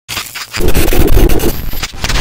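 Harsh distorted noise like a glitch or static burst. It starts at a moderate level, turns much louder about half a second in, and drops out briefly near the end.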